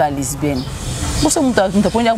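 A woman's voice speaking in short phrases, with a stretch of hiss and low rumble between them from about half a second to just over a second in.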